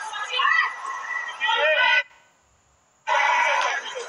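Voices speaking or calling out, cut off about two seconds in by roughly a second of near silence, then starting again loudly.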